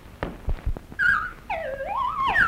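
Early sound-cartoon soundtrack: a few soft taps in the first second, then a wavering, whistle-like tone that slides up and down in pitch.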